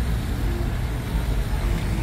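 Steady low rumble of road traffic on a busy multi-lane city street.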